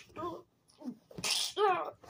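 A child's vocal sound effects, with no words: short voiced grunts, a breathy hissing burst a little past the middle, then a brief wavering squeal.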